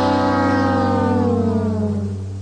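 Meme soundtrack music: one long held, siren-like note over a steady low bass, its upper tones slowly sinking in pitch as it starts to fade near the end.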